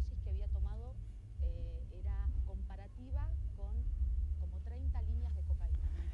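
Faint speech from a video clip played back too quietly to follow, over a steady low hum.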